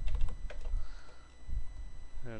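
Computer keyboard keys clicking irregularly, a quick cluster at the start and a few more spaced out after, with low thuds on the desk.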